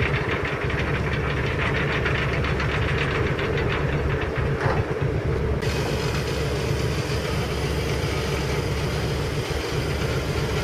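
Boat's diesel engine running, a steady low rumble with a fast rhythmic knock. About halfway through the knock fades and a steady hiss comes in.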